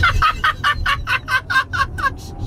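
A man laughing hard: a quick, even run of high-pitched "ha"s, about six a second, breaking off near the end.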